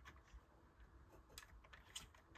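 Near silence, with a few faint plastic clicks from a LEGO brick jaw mechanism as its knob is turned to open the shark's mouth.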